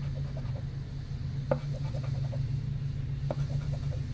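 A coin scratching the coating off a scratch-off lottery ticket in short strokes, over the steady low hum of a lawn mower engine running nearby.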